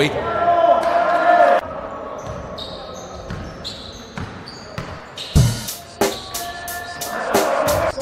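Live gym sound of an indoor basketball game, with the ball bouncing on a wooden court and short high sneaker squeaks. A hip-hop backing track drops out about a second and a half in and comes back with a heavy beat about five seconds in.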